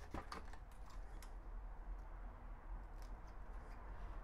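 Faint, scattered light clicks and handling sounds of a plastic cable tie being worked around a motorcycle crash bar and drawn through, over a low steady hum.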